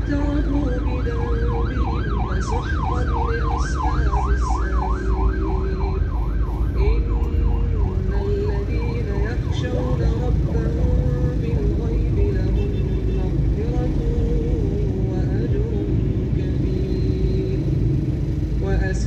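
An emergency-vehicle siren on a fast yelp, its pitch sweeping up and down about three times a second, fading out about ten seconds in. It sits over the low rumble of traffic heard from inside a car.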